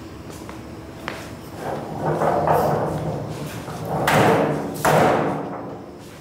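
Parts cart being handled and pushed: a sharp knock about a second in, then rolling and clattering with two loud rushing bursts about four and five seconds in.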